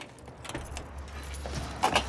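A bunch of keys jangling, with a louder clack just before the end, over a low steady hum that starts about half a second in.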